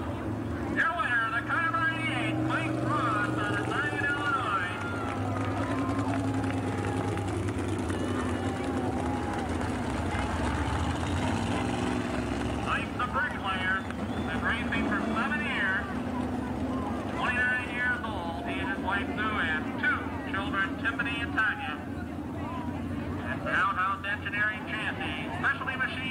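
Modified race cars' engines running in a steady drone, with a man's voice talking over it at times.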